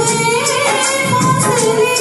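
A woman singing a Hindi film song into a microphone over Bollywood music accompaniment with a steady percussion beat.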